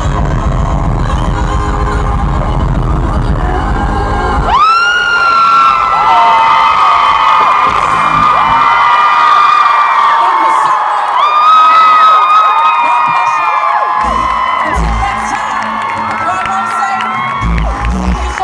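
Live concert heard from the crowd: the band plays with heavy bass, which drops out about four and a half seconds in. The female lead singer then holds long, sustained notes through the PA over a cheering, whooping crowd, and bass hits return near the end.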